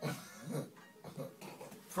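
A few short, quiet chuckles from people in the room.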